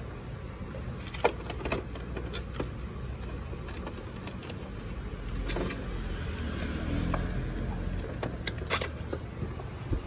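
Scattered light clicks and taps of hands handling the plastic body of a Canon PIXMA iP2870 inkjet printer, over a steady low rumble that grows louder around the middle.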